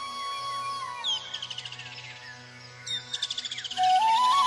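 Flute-led instrumental music with birdsong laid over it. A held flute note slides down about a second in. Bird calls come twice, each a quick downward chirp into a rapid high trill, and the flute melody comes back near the end.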